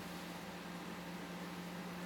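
Microwave oven running: a steady low hum over an even hiss.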